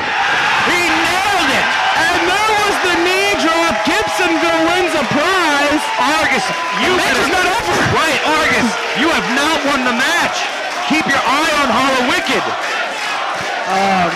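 A small live wrestling crowd shouting and cheering, with many voices yelling over one another.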